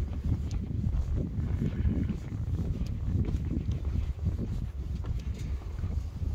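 Wind buffeting the microphone: a gusty low rumble.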